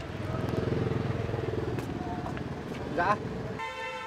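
A motorbike engine passing on the street, swelling over the first second and fading away. Near the end a brief steady tone starts.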